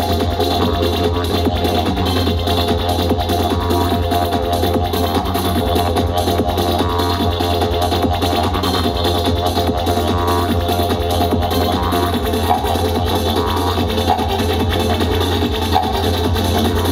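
Loud live electronic psytrance played through a PA, a steady low drone under a fast, dense beat, with a didgeridoo played into the mix.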